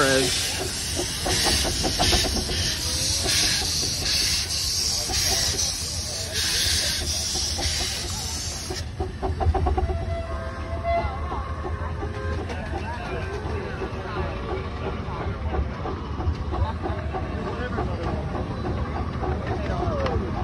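Small live-steam locomotive passing close by, venting steam in a loud hiss that pulses in a regular beat and cuts off suddenly about nine seconds in. After that come the quieter rumble and clicking of the passenger cars rolling past, with people's voices.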